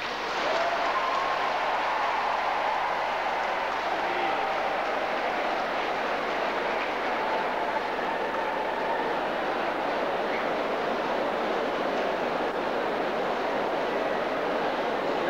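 Large audience applauding steadily for a long stretch, with voices raised within it. It breaks out suddenly at the end of a phrase of the address.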